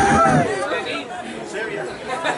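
Crowd voices: a drawn-out call trails off in the first half second, then lower chatter.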